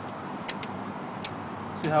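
A few short clicks of a hand tool against the metal feed mechanism of a parking-gate ticket dispenser as a jammed ticket is worked out, two close together about half a second in and another a little after a second, over steady background noise.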